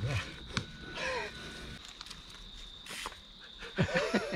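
Short voice sounds at the start and again about a second in, over a quiet background with a faint steady high whine. Two sharp clicks, one early and one about three seconds in.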